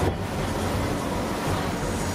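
Steady wind buffeting the microphone over the rush of sea water past a moving boat, with a low rumble underneath.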